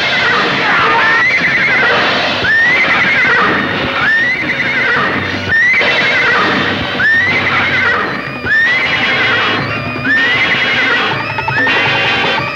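Dramatic film background score, loud and continuous, with a shrill whinny-like cry that swoops up and then wavers down, repeating about every second and a half.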